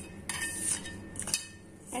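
Fingers stirring dry ground spice powder around a stainless steel bowl: an irregular scraping rustle of powder against the metal, with a few light taps.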